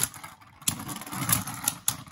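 Two Beyblade Burst spinning tops clashing in a plastic stadium: a rattling spin broken by a run of sharp plastic clacks as they knock together, with the loudest hits about two-thirds of a second in, just over a second in, and near the end.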